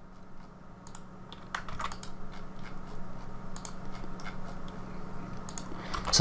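Light, irregular clicks of a computer mouse and keyboard being worked, over a steady low hum.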